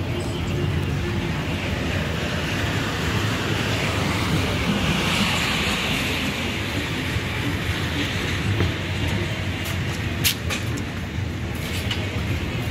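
Outdoor street ambience: a steady low rumble, swelling with hiss about four to seven seconds in, and a sharp click about ten seconds in.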